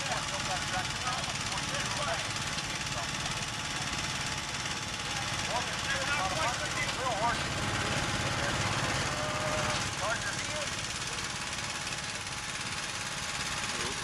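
Small engine of a custom Gravely tractor grader running steadily under load as it pulls its blade through the dirt.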